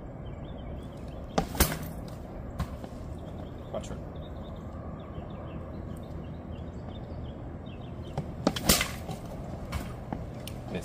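Two sling shots, each heard as a quick pair of sharp cracks with a short ring: the first about a second and a half in, the second near the end.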